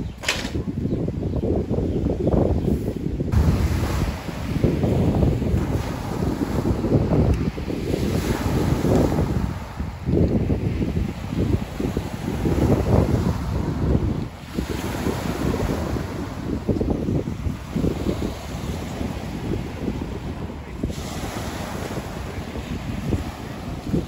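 Wind buffeting the microphone in strong, uneven gusts, over the wash of sea waves breaking on a pebble beach.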